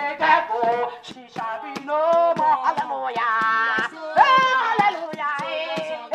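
A woman singing a chorus through a handheld megaphone, with other voices joining, over steady hand clapping.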